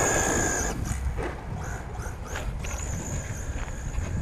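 Electric RC short-course truck driving off over loose gravel: a high motor whine with a spray of gravel noise in the first second, then the thin whine again, steady, from under three seconds in, over a low rumble.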